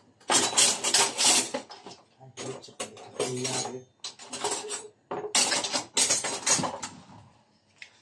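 Clatter of kitchen utensils and cookware being handled, in several bursts with short pauses between them.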